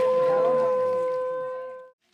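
One long steady pitched tone, like a blown horn, held over crowd chatter. It fades out over the last second and cuts off just before the end.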